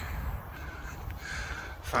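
Outdoor ambience in open farmland: a steady low rumble and faint hiss, with a faint brief higher call about a second in.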